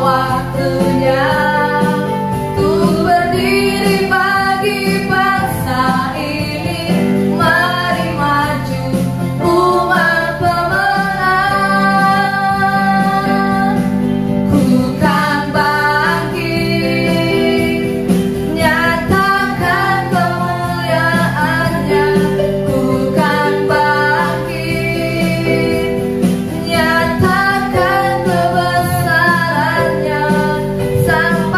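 Women's voices singing an Indonesian worship song into microphones, accompanied by an electronic keyboard, without a break.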